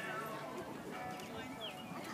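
Indistinct background chatter of people talking.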